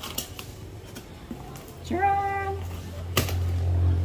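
Cardboard box flaps being pulled open and handled: a few sharp cardboard clicks and rustles, with one loud snap a little after three seconds in.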